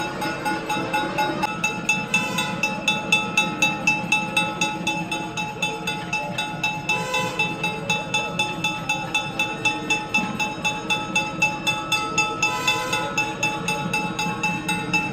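A temple bell rung in a steady rapid rhythm, about three strikes a second, its ringing tones held throughout, accompanying the camphor harathi offered to the deity. Temple music plays underneath.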